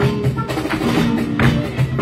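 Live flamenco: a Spanish guitar played with rhythmic hand-clapping (palmas) and sharp percussive beats.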